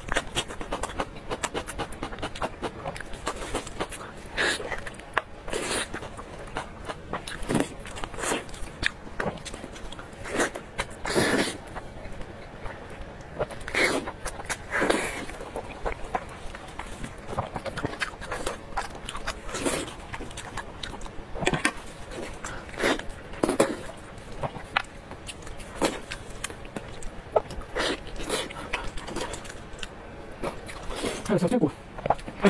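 A person eating braised sheep head meat close to a clip-on microphone: irregular wet chewing, lip smacks and sucking at meat and bones, with a few longer slurps, and the rustle of plastic gloves as the meat is torn apart.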